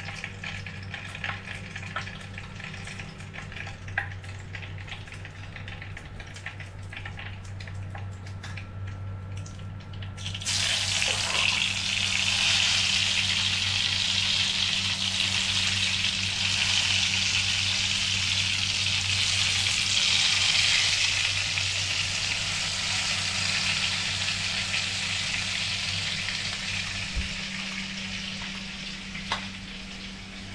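Battered slices of food going into hot oil in a frying pan about a third of the way in, setting off loud, steady sizzling that slowly eases toward the end. Before that there are only faint clinks of utensils over a low hum.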